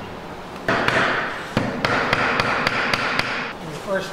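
A hammer knocking a rib down into a birchbark canoe's hull: a run of about ten quick, sharp knocks, three or four a second, starting just under a second in and stopping near the end, over a rustling noise.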